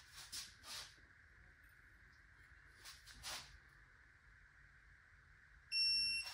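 Electronic angle torque wrench being pulled slowly on a cylinder-head bolt, with a few faint clicks. Near the end the wrench gives a high electronic beep, signalling that the bolt has reached its target 90-degree torque angle.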